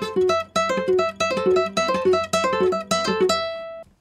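Nylon-string classical guitar played with the fingers: a quick gypsy jazz lick repeated several times, with a high note plucked twice, a pull-off, then two lower notes picked downward across the strings. The last note rings on and fades just before the end.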